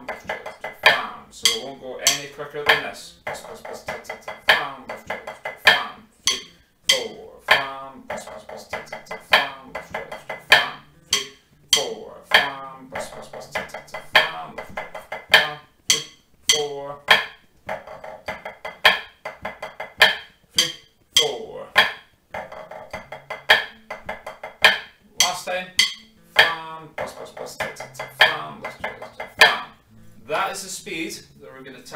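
Drumsticks played on a rubber snare practice pad in pipe band style: buzz rolls, taps and flams of a 3/4 march phrase, repeated bar after bar in a steady rhythm, with a man's voice sounding along in places.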